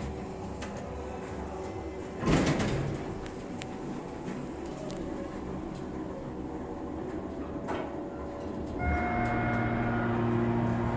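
Schindler hydraulic elevator: a thump about two seconds in, a lighter clunk near eight seconds as the sliding car door shuts, then a steady hum of several tones starting about nine seconds in as the car begins its run.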